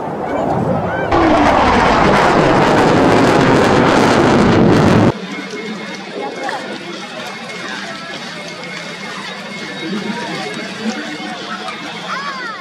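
Loud jet roar from an F/A-18 Hornet's twin turbofans, steady for about four seconds and then cut off abruptly. After it comes quieter chatter from onlookers with a faint steady whine.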